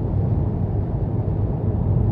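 Steady low rumble of road, tyre and wind noise, with the engine drone underneath, heard inside the cabin of a 2023 Hyundai Venue cruising at about 60 mph.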